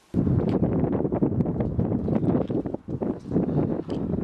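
Wind buffeting the camera's microphone outdoors: a loud, gusty low rumble that starts suddenly.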